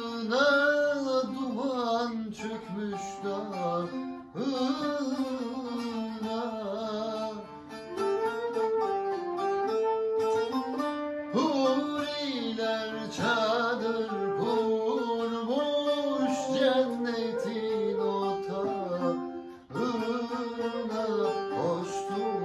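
Turkish folk music played on bağlama (long-necked lute) and flute, with a man singing the melody.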